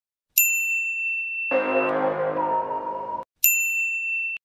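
Two identical bright, bell-like ding sound effects, about three seconds apart, each struck suddenly and left to ring out. Between them a short burst of music-like sustained tones swells in and cuts off abruptly.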